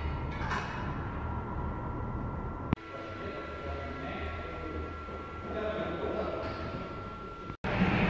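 Low steady mechanical hum in a vehicle inspection hall, with faint indistinct voices. The sound is spliced: it cuts with a click about three seconds in, drops out briefly near the end, and comes back louder.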